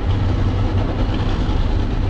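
Steady low rumble of a minivan's engine and tyres on the road, heard from inside the cabin while driving.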